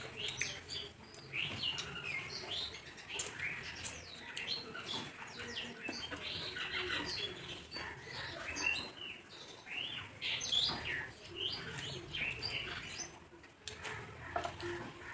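Close-up chewing and lip-smacking of two people eating biryani with their hands: a dense run of short, irregular wet mouth clicks and smacks.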